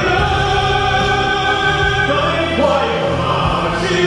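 Male baritone singing live into a handheld microphone, holding long sustained notes that move to a new pitch about halfway through, over instrumental accompaniment with a steady bass.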